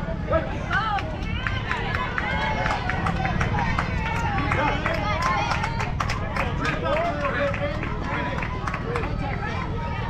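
A sharp crack, a bat striking a softball, about a third of a second in, then many voices of spectators and players shouting and cheering over each other, with clapping, as the batter runs.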